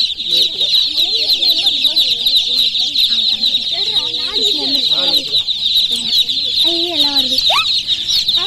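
Many baby chicks crowded in crates, peeping all at once in a dense, high-pitched chorus without a break.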